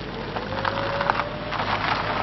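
A car pulling away over gritty concrete, its tyres crackling and crunching, with a faint engine note rising in pitch for about a second and a half as it moves off.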